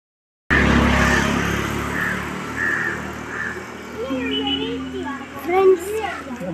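People talking on a street, over a low engine hum that fades away during the first few seconds.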